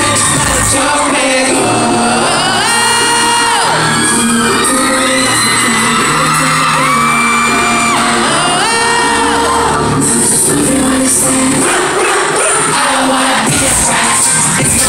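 Live pop song played loud through a concert PA, with held, gliding sung vocal lines over the backing track, and the audience cheering and screaming along, most plainly in the last few seconds.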